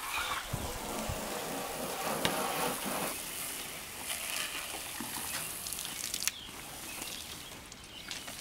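Water spraying from a pistol-grip garden hose nozzle onto a car's roof and rear window louvers: a steady hiss, with a couple of short clicks.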